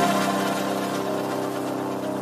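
Electronic dance music in a breakdown: a held synthesizer chord with no drums, fading slowly.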